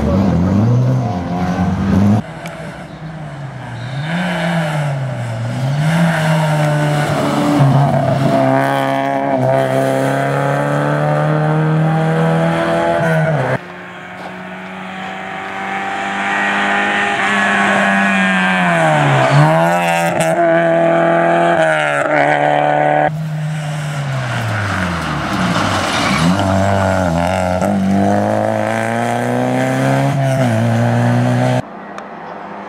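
Rally car engines revving hard on a stage. The pitch climbs and drops again and again as the cars go through the gears and lift for corners, among them a Škoda Favorit's four-cylinder. The sound jumps abruptly between passes twice, about a third of the way in and again past the middle.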